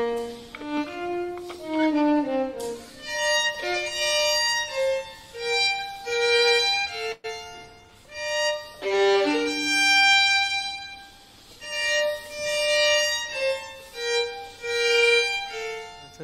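Violin playing a slow melody of long bowed notes. The phrases swell and fade, with short breaks between them.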